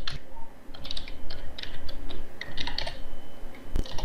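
Typing on a computer keyboard: runs of quick keystrokes with short pauses between them, and one heavier stroke near the end.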